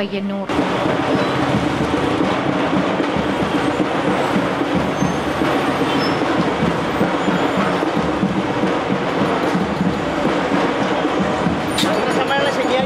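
Street noise of a walking procession: a steady, dense mix of many voices and passing traffic that comes in about half a second in.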